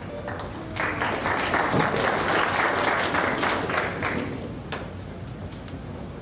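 Audience applauding: the clapping swells about a second in, holds for about three seconds and dies away, leaving a few stray claps.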